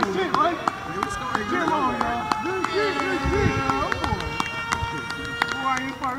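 Several voices shouting and calling indistinctly across a field, mixed with the scattered sharp footfalls of players running on dry grass.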